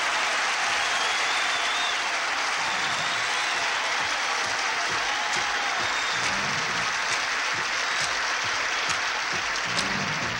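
Studio audience applauding steadily after a performer is introduced.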